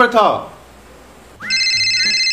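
A word of a man's speech, then about one and a half seconds in a mobile phone starts ringing: an electronic ringtone of high tones pulsing rapidly, opening with a short rising sweep.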